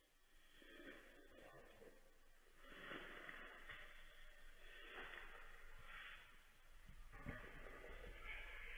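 Near silence, with faint noise that swells every second or two.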